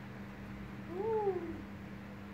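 A domestic animal's single short call, rising then falling in pitch, about a second in, over a steady low hum.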